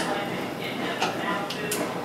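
A ladle knocking lightly against a canning funnel and glass jars while thick pumpkin butter is spooned in: two faint clicks, about a second in and near the end.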